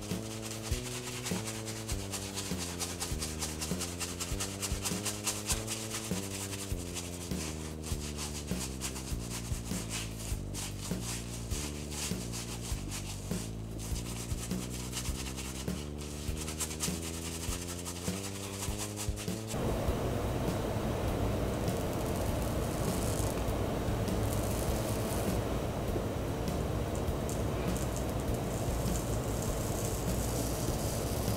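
Shaving brush scrubbing lather over a shaved scalp, a rapid rubbing sound, over background music with a stepping low melody. About twenty seconds in the melody stops and a denser, steadier rubbing noise carries on.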